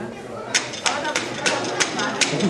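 Sharp claps in a steady rhythm, about three a second, beginning about half a second in, with voices chattering underneath.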